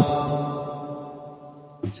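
A man's voice, its last drawn-out word dying away in a long ringing echo that fades over nearly two seconds; he starts speaking again just at the end.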